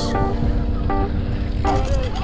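Background music in a gap between sung lines of a song: held chords over a low rumble.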